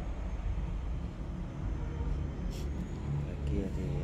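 Low, steady rumble of street traffic, with a brief sharp click about two and a half seconds in.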